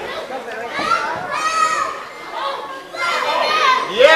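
Children in the audience shouting and calling out in high voices over crowd chatter, echoing in a large hall.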